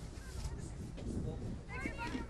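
Outdoor field ambience: a steady low wind rumble on the microphone with faint distant voices, and a high-pitched voice calling out near the end.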